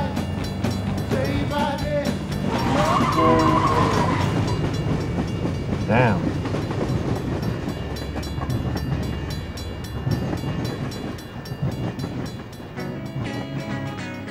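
Freight train passing, a steady rumble from its wheels on the rails, with its horn sounding about three seconds in. Music comes back in near the end.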